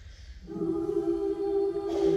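A high-school a cappella group's voices come in about half a second in after a brief hush, holding a steady chord. A short, sharp hit sounds near the end.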